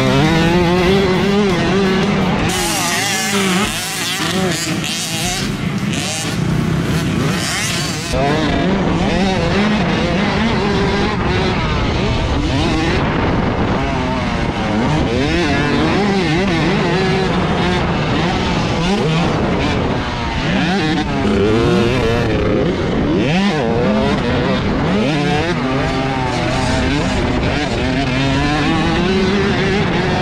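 Husqvarna TC65 two-stroke dirt bike engine heard from onboard, revving up and falling off again and again as the rider works the throttle and gears around the motocross track, with wind noise over it.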